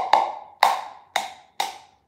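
Egg knocked against the rim of a ceramic mug to crack it: four sharp taps about half a second apart, each leaving the mug ringing briefly.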